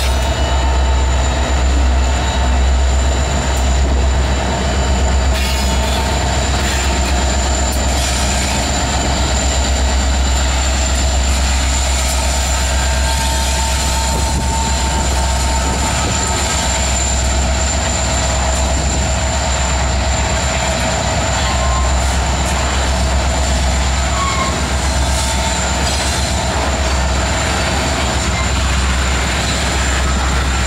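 Slow freight train passing close by: the diesel engines of two EMD locomotives, an SD70M-2 and an SD60M, rumbling steadily, then covered hopper cars rolling past. A steady high-pitched wheel squeal runs over the rumble.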